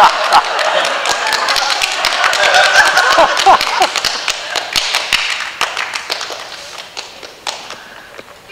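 A small group of people clapping hands, with laughter in the first half; the claps thin out and die away, the last one just before the end.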